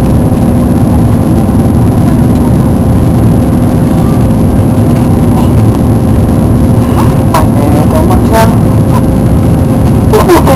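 Loud, steady cabin noise of an Airbus A340-300 climbing after take-off: the drone of its four CFM56 jet engines and rushing air, with a steady low hum. A few short clicks come near the end.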